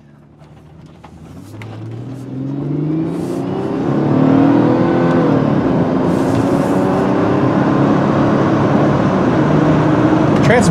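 2002 Chrysler Sebring's 2.7-litre V6 pulling the car up to speed, its note rising in pitch and getting louder over the first few seconds, then holding steady around 3,000 rpm with road and wind noise. The four-speed automatic upshifts smoothly on the way up, the engine's pitch dropping back at each shift.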